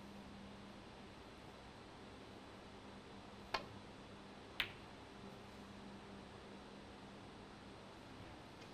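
Two sharp clicks of a snooker shot about a second apart: the cue tip striking the cue ball, then the cue ball hitting a red, over a low steady hum.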